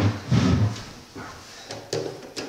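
A sharp knock, then a short low sliding rumble about half a second in and a few light clicks near the end: a homemade camera slider, a PVC carriage on 16 mm linear ball bearings riding copper tube rails, being handled on a wooden table.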